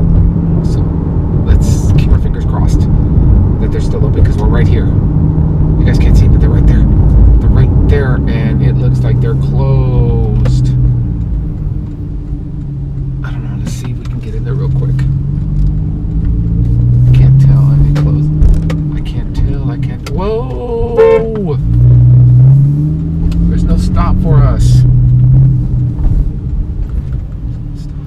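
Porsche 911 Carrera's flat-six engine and road rumble heard from inside the cabin while driving, the engine note rising and falling several times as the car accelerates and eases off.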